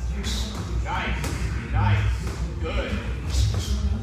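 Two boxers sparring: gloved punches thudding, with three short, sharp hissing exhales and footwork on the ring canvas, over background music.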